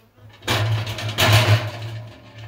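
Wooden honey frame scraping and knocking against the metal basket and drum of a stainless steel honey extractor as it is lifted out after spinning; a loud scrape and clatter starts about half a second in and lasts just over a second.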